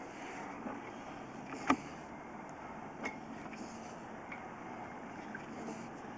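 Push cable of a sewer inspection camera being fed down a pipe: a steady rustling noise with a sharp click a little under two seconds in and a softer one about a second later.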